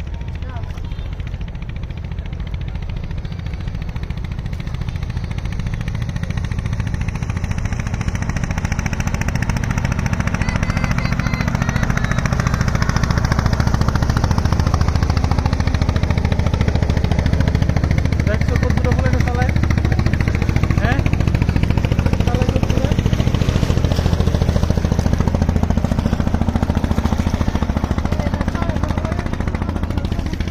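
Steady low rumble of a boat engine on the river, growing louder about ten seconds in, with indistinct voices faintly over it.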